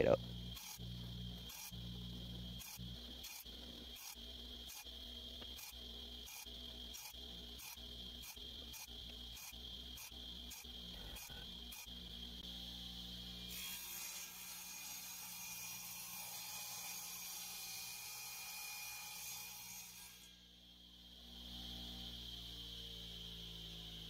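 Faint background music with a steady beat of about two a second over held tones, changing to a brighter, hissier texture a little past halfway and dipping briefly before it settles again.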